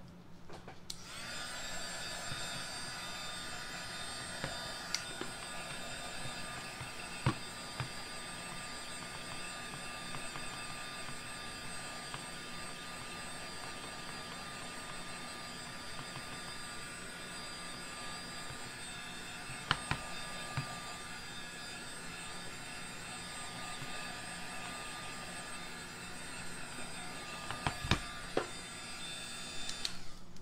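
Handheld craft heat gun running steadily with a whine, switched on about a second in, drying freshly stenciled chalk paste on a wooden box frame. A few light knocks sound over it.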